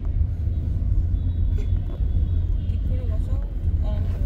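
Steady low rumble of a car in motion heard from inside the cabin, with a faint voice briefly about three seconds in.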